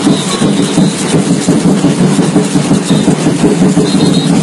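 Samba batucada percussion ensemble drumming a steady, driving rhythm, loud and close to the microphone.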